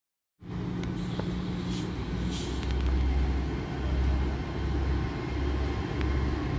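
GWR Class 802 bi-mode train's underfloor diesel engines running as it pulls away on diesel power. The sound starts suddenly about half a second in, a steady drone with a deep throb that grows stronger from a couple of seconds in.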